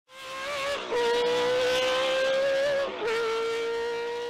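Racing car engine at high revs: one high, steady engine note that fades in, breaks off briefly twice as in quick upshifts, and starts to fade away near the end.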